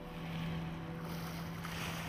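Lakeside outdoor ambience: an even rush of wind and water, with a steady low hum.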